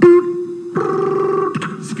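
A man's mouth-made imitation of an intercom call button: a steady beep lasting about three-quarters of a second, then a buzzier ringing tone of similar length that stops about a second and a half in.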